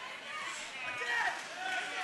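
Crowd around the fight cage shouting and chattering, many voices overlapping at once.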